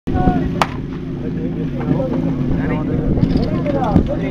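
Portable fire pump engine running with a steady hum, with a single sharp crack about half a second in and shouting voices over it.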